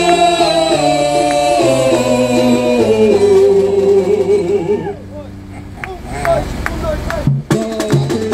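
Male voices singing a samba-enredo into microphones over an amplified band with a bass line, holding long notes that step down in pitch. The music drops quieter about five seconds in and cuts out briefly just past seven seconds before the beat comes back.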